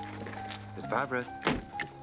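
Sustained orchestral score, with a brief voice sound about a second in, then a single solid thunk about a second and a half in: the door of a vintage car being shut.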